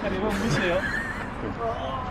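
A person's voice making wordless sounds that slide up and down in pitch, mostly in the first second or so, over steady outdoor background noise.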